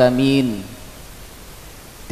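A man's voice through a microphone, drawing out a last syllable that falls in pitch and stops about half a second in; then a pause filled only with a steady hiss.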